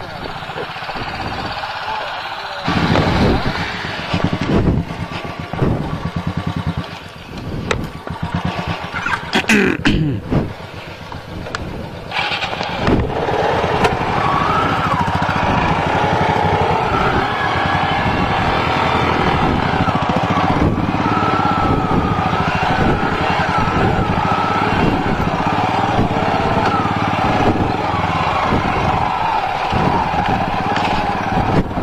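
Motorcycle engine running on an off-road dirt track. The sound is uneven at first, then louder and steady from about twelve seconds in.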